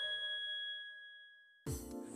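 A single bright chime ending a short TV programme jingle, ringing on one clear tone and fading over about a second and a half. It then cuts suddenly to outdoor ambience with a high, steady insect buzz.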